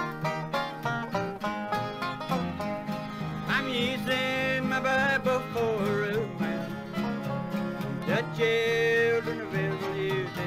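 Instrumental introduction of a bluegrass gospel song: banjo picking over guitar rhythm, with a lead instrument sliding into long, bending held notes twice.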